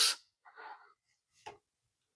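Quiet handling of multimeter test probes being moved between AA batteries: a faint rustle, then one short light click about one and a half seconds in as a probe meets a battery.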